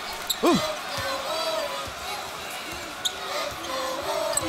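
Basketball dribbled on a hardwood arena court, a few separate bounces against the steady background hum of a large arena.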